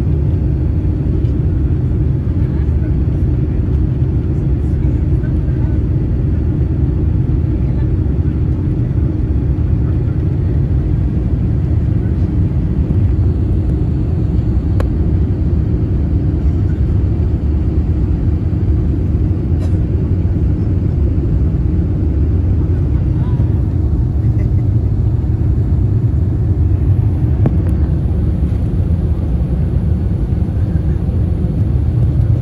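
Steady low rumble inside an Airbus A350-900's cabin near the wing, from its Rolls-Royce Trent XWB engines at climb power shortly after takeoff.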